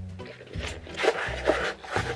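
Background music with steady low notes, over the scraping and flexing of a kraft cardboard mailer box being folded by hand.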